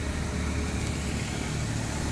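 Steady background noise: a low hum with an even hiss, no distinct events.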